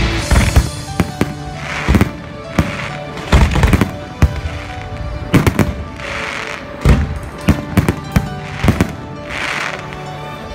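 Fireworks display: aerial shells bursting in a string of sharp bangs, roughly one to three a second, some in quick clusters, with music playing underneath.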